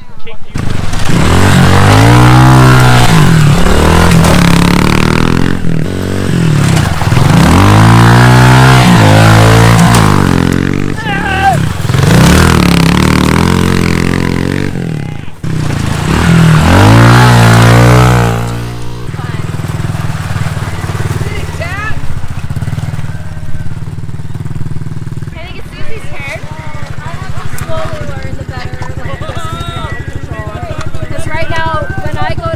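Honda CRF110 pit bike's small four-stroke single-cylinder engine revving up and easing off four times as it is ridden. About two-thirds of the way through it drops to a steady, quieter idle.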